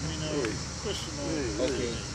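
Steady chirring of insects in the trees, with faint voices of people talking in the background.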